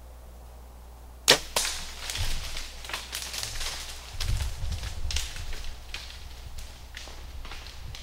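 A bow shot: one sharp crack of the string release and arrow strike about a second in. It is followed by several seconds of a whitetail buck bounding away through dry leaves and brush, a run of irregular rustles, snaps and thuds as it flees hit.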